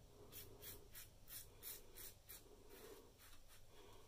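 Carbon safety razor with a Voskhod blade scraping through lathered stubble against the grain: faint, short, quick scraping strokes, about three a second.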